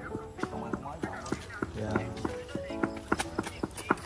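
Game or cartoon audio playing from a mobile phone: a quick run of clip-clop-like clicks, about three a second, under short musical notes.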